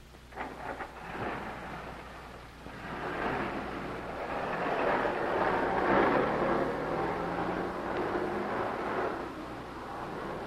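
A car driving, its engine and road noise swelling from about three seconds in and loudest around the middle, with a few short clicks near the start.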